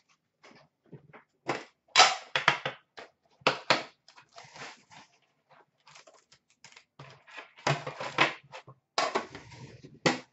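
Trading-card boxes and cards being handled on a counter: a run of sharp clacks and rustling of cardboard and packaging, in bunches about two seconds in, near four seconds, and again toward the end.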